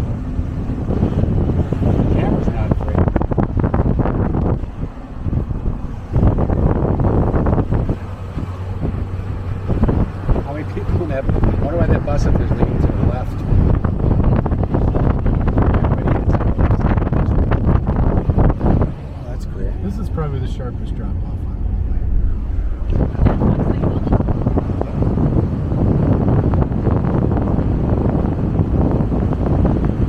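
Heavy wind buffeting on the microphone through the open window of a moving truck, mixed with road and engine noise. The rush eases briefly around five seconds in and again for a few seconds around twenty seconds in.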